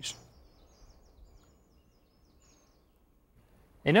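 Faint, high-pitched bird chirps: a quick run of short notes over the first two seconds or so.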